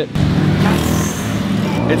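A motor vehicle's engine running steadily close by on a city street.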